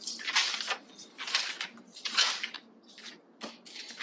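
Glossy magazine pages being turned and handled: paper rustling in a few separate swishes, the loudest about two seconds in.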